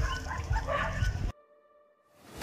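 A dog barking in short bursts, cut off suddenly about a second and a half in, leaving near silence.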